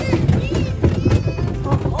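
Small road train's wooden carriage rolling along, with a steady low rumble and irregular rattling knocks. Music and voices are heard in the background, and a laugh comes at the very end.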